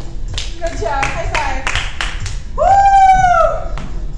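A string of sharp hand claps, about four a second for the first half, then one long high-pitched shout, the loudest sound, rising slightly and then falling away.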